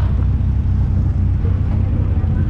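Car engine idling steadily, a low even rumble with no revving.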